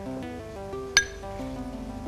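Soft background music with a single sharp clink about a second in: a utensil or dish knocking against the bowl while spices are added to mashed egg.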